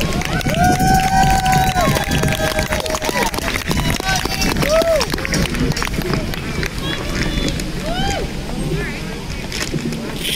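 Scattered high-pitched voices calling out and cheering, children among them, with sharp clicks and knocks from a microphone stand being handled and adjusted.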